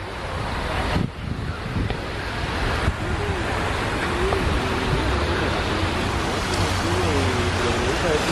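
Park fountain jets splashing into a large basin, a steady rushing hiss that builds gradually as the camera nears the water, with wind rumbling on the microphone underneath.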